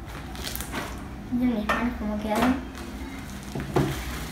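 Pink slime being gathered up and pressed against a wooden tabletop by hand, making about half a dozen short, sticky smacks.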